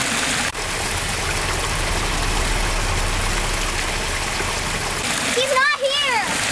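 Creek water rushing steadily over rocks, an even hiss. A child's voice calls out briefly near the end.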